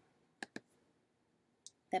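Two quick, sharp clicks of a computer mouse about half a second in, advancing the on-screen book to the next page; otherwise nearly silent.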